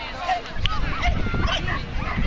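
A dog barking amid the indistinct talk of people around it.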